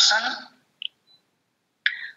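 A lecturer's speech trailing off into a pause, broken by a single short click a little under a second in and a brief noisy sound near the end as speech is about to resume.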